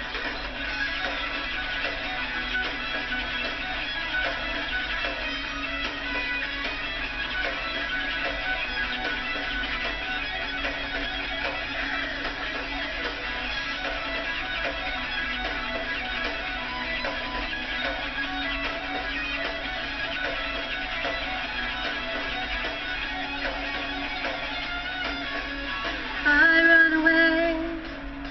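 Instrumental intro of a guitar-led rock backing track, steady and full. Near the end a woman's singing voice comes in over it, louder than the track.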